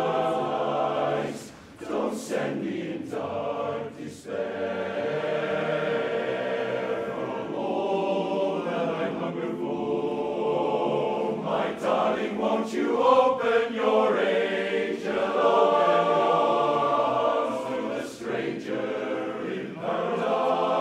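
Large male barbershop chorus singing a cappella in close harmony, holding full chords with short breaks between phrases about a second and a half and four seconds in.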